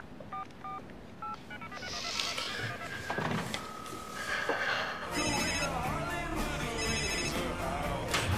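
Mobile phone keypad beeps as a number is dialled, a short held tone, then a mobile phone ringtone melody playing from about five seconds in.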